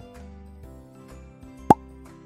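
Soft background music with a single short, sharp cartoon 'plop' sound effect near the end.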